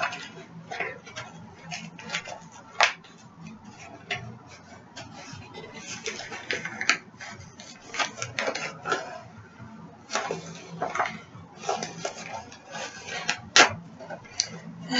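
A sealed plastic-packaged tumbler being worked open by hand: irregular crinkling, rustling and small clicks of plastic, with a sharper snap about three seconds in and another near the end.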